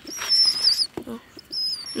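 Two high-pitched squeaky bird calls. The first lasts most of a second and dips slightly in pitch at its end; the second is shorter, about halfway through. There is a single click about a second in.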